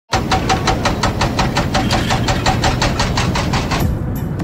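A car engine running, a low rumble with a fast, even ticking of about five a second over it, starting abruptly.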